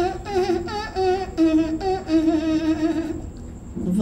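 A man humming a tune with a wavering pitch: a few short notes, then one longer held note, stopping about three seconds in.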